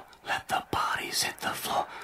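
Whispered vocals of a song's intro, in short phrases.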